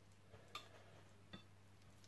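Near silence with two faint, short clicks about half a second and a second and a half in: a metal spoon lightly tapping while mashed potato is spooned onto a muffin on a plate.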